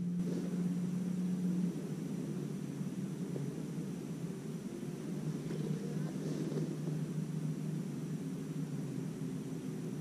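Bow-mounted electric trolling motor humming steadily, its pitch stepping slightly lower about two seconds in.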